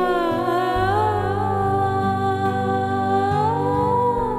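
Slow background score: a wordless hummed melody gliding over long held low notes.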